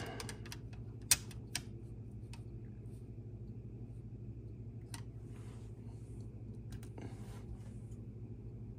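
A few light clicks and taps, with brief soft rubbing, as a carbon arrow shaft is handled and seated on a spine tester's rollers, the sharpest click about a second in; a steady low hum lies underneath.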